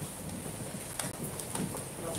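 Low room noise with a sharp click about a second in and a few faint knocks.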